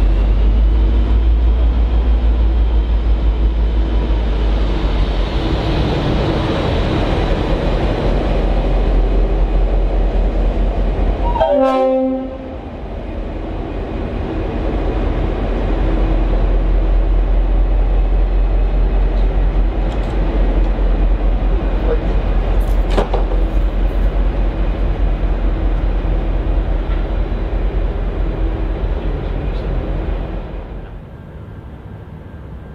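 V/Line N class diesel-electric locomotive and passenger carriages rumbling past at a station, with a steady, loud diesel engine drone. A brief horn toot sounds about twelve seconds in, after which the sound drops for a moment before the engine and wheel rumble build again.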